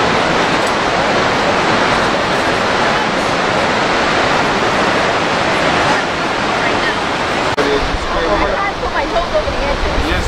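Steady rushing of white-water rapids on the Zambezi River, an even, loud wash of noise. About seven and a half seconds in it cuts off abruptly, and faint voices follow.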